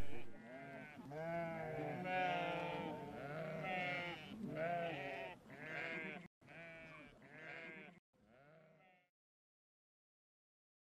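Sheep bleating, several wavering calls overlapping one after another. They grow fainter after about six seconds and stop about a second before the end.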